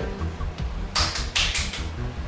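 Quiet background music with a low beat, and about a second in a short burst of quick typing taps, like a phone-typing sound effect.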